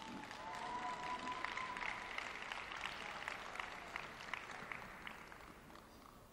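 Arena audience applauding a skater as he is introduced, with scattered claps that thin out and fade away near the end. One held high note rises above the clapping for the first couple of seconds.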